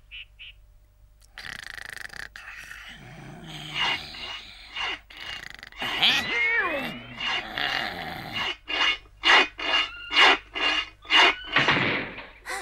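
Cartoon sound effect of a metal file rasping on iron bars, ending in quick regular strokes about two a second, with a growl partway through. The noise is loud enough to disturb a sleeper.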